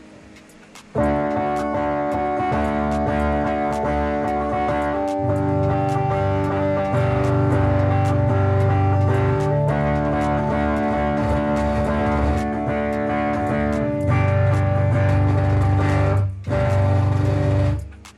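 Tagima TG-530 Stratocaster-style electric guitar on the combined neck-and-middle pickup setting, played through an amplified speaker: sustained strummed chords begin about a second in and change every few seconds, with a brief break near the end. The tone is not fully clean, which the player puts down to the speaker peaking easily.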